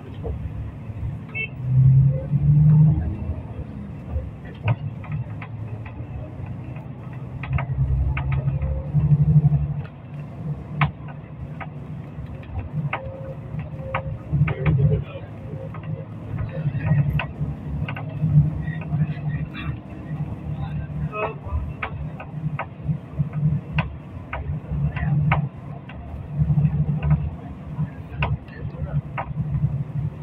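Low rumble of a moving vehicle's engine and road noise, heard from inside the cabin and rising and falling as it drives, with scattered short clicks and rattles.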